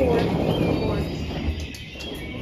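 Rolling suitcase wheels rumbling over a hard floor, fading near the end as the bag comes to rest, with faint voices behind.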